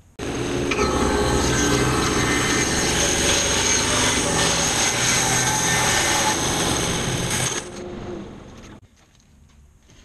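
Grizzly G0513 17-inch bandsaw cutting a small mesquite log held on a sled: a loud, steady cutting noise over the motor's hum, starting suddenly and dropping away, fading out over about a second, about eight seconds in.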